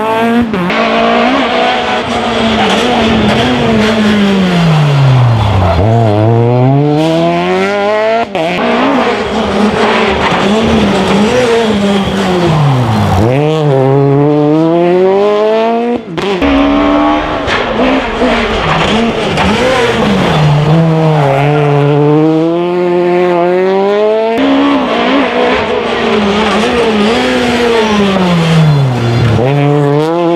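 Rally car engines taking a tight hairpin one car after another. Each engine's pitch falls as the car slows into the bend and then climbs as it accelerates hard out of it. There are four passes in all, and the sound changes abruptly between them.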